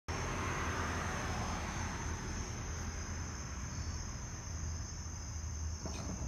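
Crickets chirping as a steady, unbroken high trill, over a low rumble.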